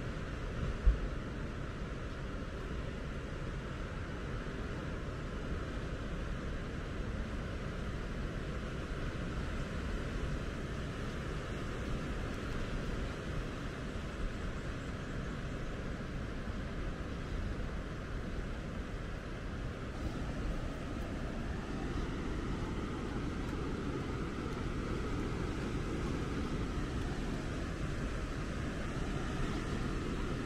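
Steady low rumbling background noise, a little stronger in the second half, with one brief thump about a second in.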